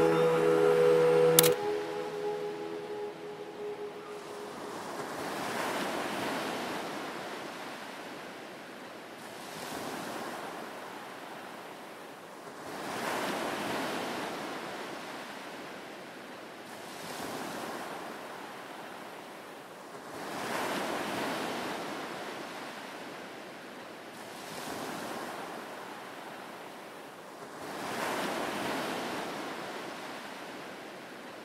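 Sea waves washing in, swelling and falling away about every four seconds. The track's music ends with a sharp click about a second and a half in.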